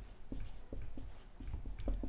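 Marker writing on a whiteboard: a series of short, separate pen strokes as a word is written letter by letter.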